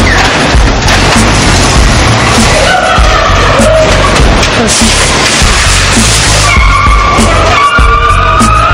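Music with a heavy bass beat over a loud noisy din as a pickup on hydraulic lowrider suspension hops on a concrete floor, with tires scrubbing and squealing.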